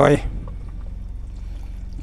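Beaten eggs frying in oil in a small non-stick pan, a faint steady sizzle, over a low steady hum.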